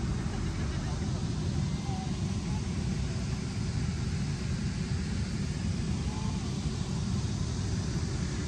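Wind buffeting the microphone: a steady, uneven low rumble with no other clear sound over it.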